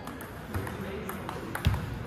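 Table tennis rally: the ball clicks sharply off the paddles and the table several times in quick, uneven succession.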